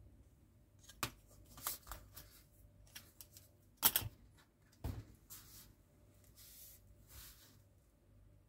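Small plastic and metal model-kit parts handled between the fingers: a few sharp clicks and taps, the loudest about four and five seconds in, followed by soft rustling.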